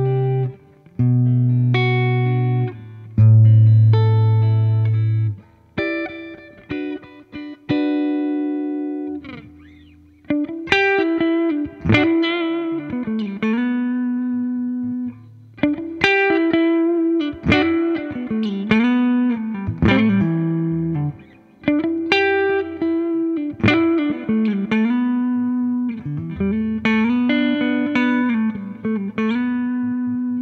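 2008 Gibson Les Paul Standard Plus electric guitar on its neck pickup, volume and tone wide open, played through a Fender '65 Reissue Twin Reverb amp. A few sustained chords come first, then from about ten seconds in single-note lead lines with string bends and vibrato.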